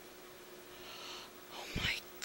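A woman breathing: a soft breath out about a second in, then a quick, louder in-breath near the end that puffs onto the microphone. A faint steady hum sits underneath.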